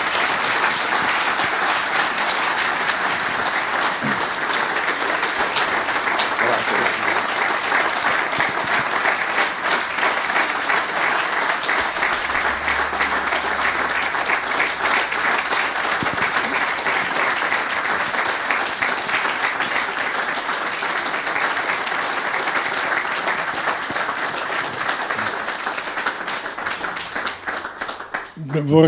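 Sustained applause from a large audience, many hands clapping in a dense, steady patter that dies away near the end.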